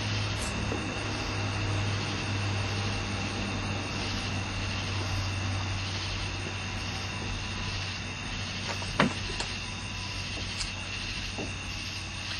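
A steady low mechanical drone with a hum, and a single sharp click about nine seconds in.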